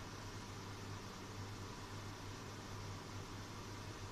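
Steady background hiss with a low, even hum: room tone and recording noise, with no distinct event.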